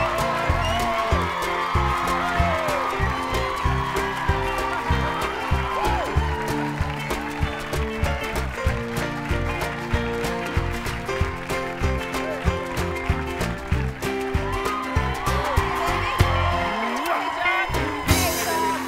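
A live house band plays an upbeat tune with drums, bass and keyboards, and the studio audience claps and cheers along.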